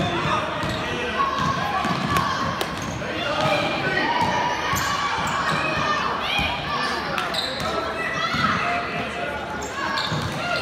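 A basketball bouncing on a hardwood gym floor during play, with sneakers squeaking briefly near the middle and spectators talking and calling out, all echoing in the large gym.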